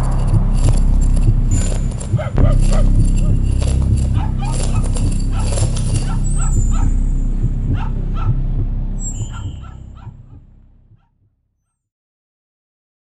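Dogs barking repeatedly over a steady low rumble. The sound fades out and is gone about eleven seconds in.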